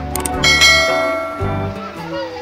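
Subscribe-button animation sound effect: a couple of quick clicks, then a bright bell chime struck about half a second in and ringing away over about a second, over background music.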